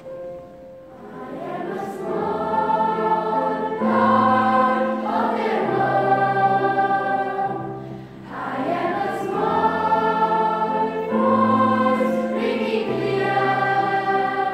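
A large youth choir sings a slow piece in two long phrases with held notes, over a digital keyboard accompaniment.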